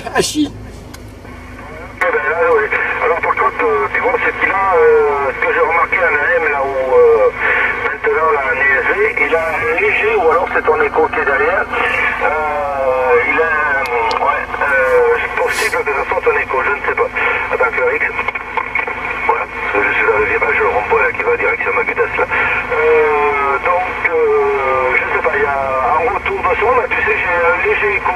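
A distant station's voice received on lower sideband through a President Lincoln II+ CB radio's speaker: thin, telephone-like speech over a steady low hum. It starts about two seconds in, after a short laugh, and runs almost to the end.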